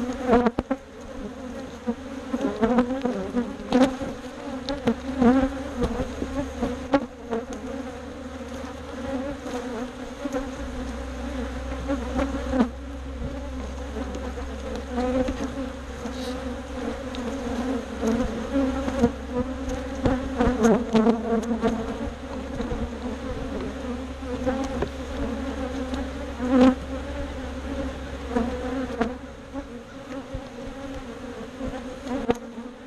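Honeybees buzzing around opened hives, a dense steady hum of many wingbeats with individual bees swelling louder as they fly close past. Scattered clunks of wooden hive boxes and frames being handled sound through it.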